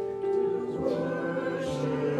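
Mixed church choir of men and women singing with piano accompaniment, holding sustained notes that move from chord to chord.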